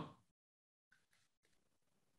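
Near silence: faint room tone after the last word of speech dies away.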